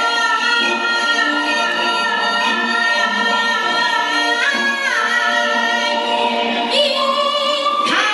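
A woman singing Chinese opera into a microphone, holding long notes with vibrato and sliding between pitches.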